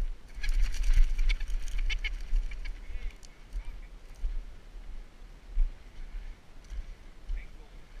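Rooster ring-necked pheasant giving a run of harsh squawks as it is picked up by hand out of the brush, with a few more calls later. A low wind rumble sits on the microphone throughout.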